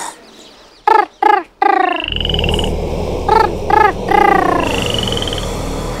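A night-time animal sound effect: frogs croaking in short, repeated calls, joined about two seconds in by a steady low hum and a couple of high rising whistled calls.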